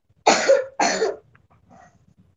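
A person coughing twice in quick succession, both coughs within the first second.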